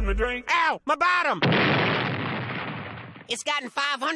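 Cartoon soundtrack: a song cuts off, two brief vocal outbursts follow, then a sudden loud burst of noise like a blast that fades away over about two seconds.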